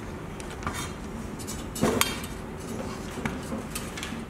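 Aluminium extrusion profiles knocking and clinking as they are handled, a series of light metallic knocks and scrapes, the loudest about two seconds in.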